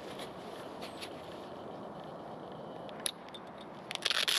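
Handling of a nylon Cordura belt pouch: light rustling and faint clicks over a steady background hiss, with one sharper click about three seconds in.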